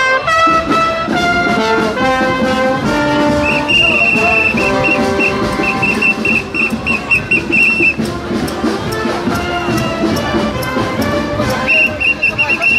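Street brass band of trumpets and trombones playing a tune in held notes that step up and down in pitch. A shrill, steady high note sounds over the band for about four seconds in the middle and again right at the end.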